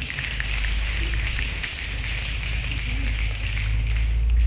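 A small group applauding with hand claps, fading out near the end.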